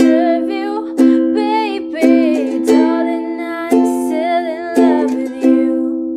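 Ukulele strummed in a steady chord pattern, a sharp stroke about once a second, with a woman singing along. Near the end the last chord is left to ring and fade.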